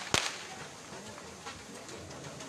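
A whip cracks once, sharply, just after the start, as oxen are driven at a run around a Persian-wheel well.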